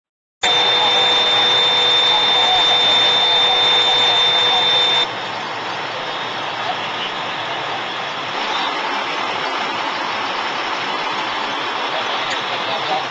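Steady outdoor noise of running vehicle engines, with a steady high whine over it for the first five seconds that stops abruptly as the sound drops to a lower level.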